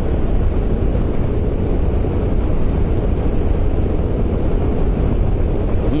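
Steady rush of wind and road noise from a Sym MaxSym 400 maxi-scooter riding at highway speed, low and even throughout.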